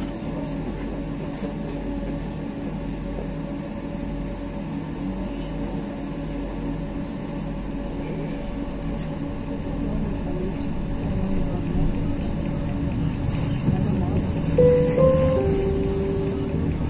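Pesa Fokstrot 71-414 tram heard from inside while running, a steady running noise with a constant low electric hum that grows louder over the last few seconds. A few short, steady tones sound near the end.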